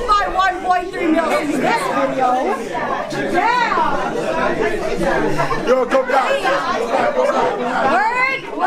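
Several people talking and calling out over one another, with no words clear, one man's voice through a handheld microphone among them.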